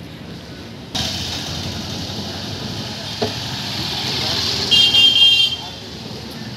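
A motor vehicle passes close: its noise starts suddenly about a second in and grows louder, with a short horn toot near the end before it falls away.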